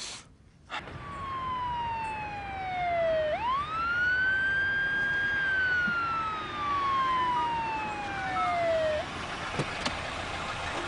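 Police car siren wailing in one slow cycle. The tone falls, swoops sharply back up about three seconds in, holds high, then slides down again and cuts off near the end.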